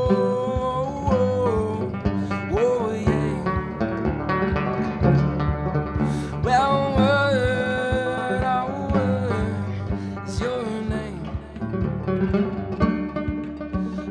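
Solo banjo picked steadily, with a man's voice singing long held, sliding notes over it, strongest near the start and again about halfway through.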